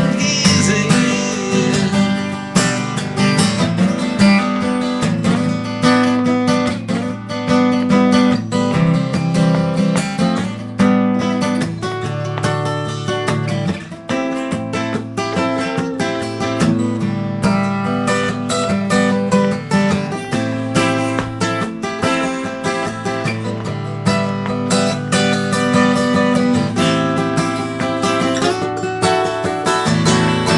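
Gibson Hummingbird steel-string acoustic guitar strummed in steady rhythmic chords.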